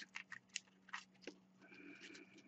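Faint, irregular crackles of crumpled aluminium foil being squeezed and pressed into a tight ball by hand.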